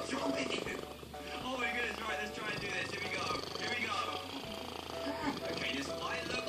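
A domestic cat making a run of short, wavering meow-like calls, with background music underneath.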